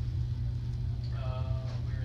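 A steady low rumble, with a brief faint voice a little past halfway.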